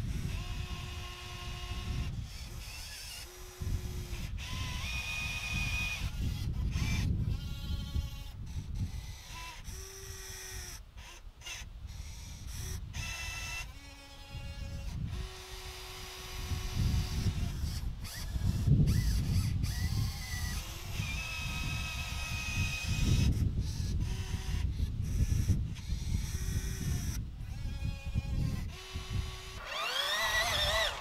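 Radio-controlled scale excavator's motors whining in short starts and stops, each lasting about a second, as the arm and bucket are worked to load dirt into a model dump truck, over a steady low rumble.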